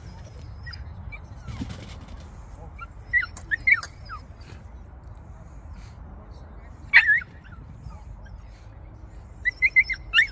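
A dog giving short, high-pitched yips and barks. There is a cluster of three about three seconds in, a single loud one about seven seconds in, and a quick run of several near the end.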